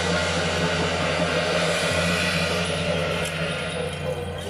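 Temple-procession percussion: large hand cymbals clashing in a dense, continuous ringing wash over a steady low hum. The high ringing thins about two and a half seconds in.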